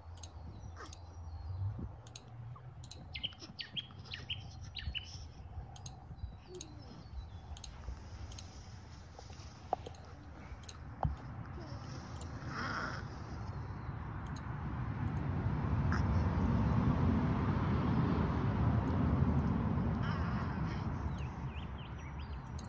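Outdoor garden ambience with birds chirping in short, scattered calls, busiest in the first several seconds. Over the second half a steady rushing noise swells and then fades.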